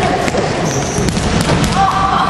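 Children's voices calling and a ball thudding on the floor, echoing in a large sports hall, with a few short knocks from ball contacts.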